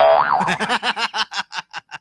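A comic sound effect, boing-like: a pitched tone that wobbles up and down, then breaks into a quick string of short pitched pulses that fade out.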